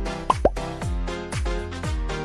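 Upbeat background music with a steady kick-drum beat about twice a second. About a third of a second in, two quick pops with a sliding pitch, close together, stand out as the loudest sounds.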